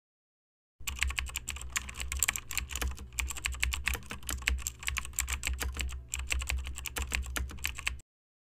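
Computer keyboard typing sound effect: rapid, uneven key clicks starting about a second in, with a few short pauses and a low hum underneath.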